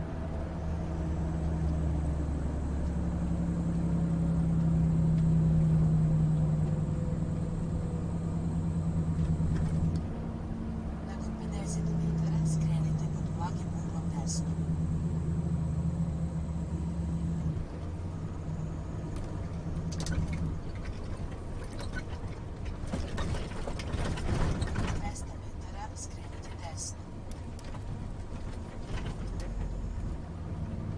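Volvo truck's diesel engine running under way, heard from inside the cab, its hum swelling over the first few seconds and then easing and varying with the road. A spell of rushing noise comes about three-quarters of the way through, with a few light clicks scattered across.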